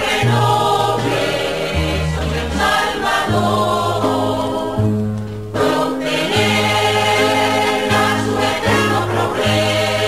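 Music: a choir singing over held bass notes that change every second or so.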